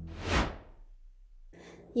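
Swoosh transition sound effect: one quick swell of rushing noise that rises and fades within about half a second near the start.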